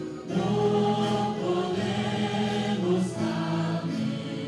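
A congregation of worshippers singing a hymn together, voices holding long sustained notes. The singing swells in just after the start.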